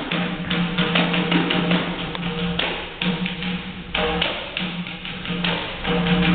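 A fast, syncopated samba rhythm tapped on a small hand-held percussion instrument, many sharp strikes a second, over a steady low tone.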